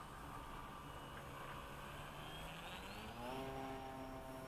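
Faint whine of a Durafly Tundra RC floatplane's electric motor, rising in pitch about three seconds in as the throttle opens for a take-off run across the water.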